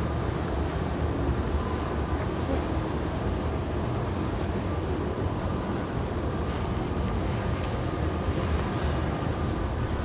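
Steady low rumble of city street noise with no clear single event, a few faint clicks here and there.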